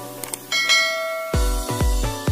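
A bright bell chime rings about half a second in and fades, the ding that goes with a subscribe-button animation. Music with a heavy bass beat, about two beats a second, comes in about two-thirds of the way through.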